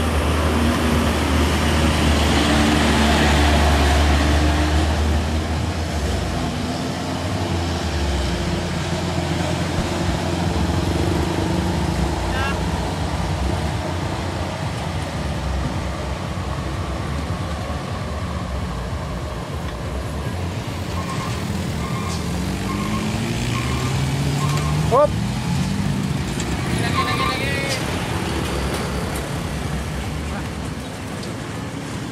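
Vehicle engines on a steep mountain road. A deep engine rumble is heaviest for the first several seconds. Later an engine revs with rising pitch, with a short series of beeps and a brief rising squeal about twenty-five seconds in.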